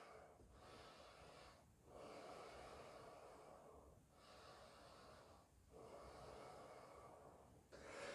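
Faint, slow breathing: about four long breaths with short pauses between, over near-silent room tone.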